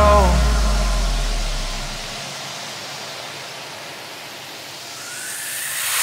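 Soundtrack transition effect: a deep bass boom fades away over about two seconds, leaving a soft hissing whoosh that swells into a rising sweep near the end.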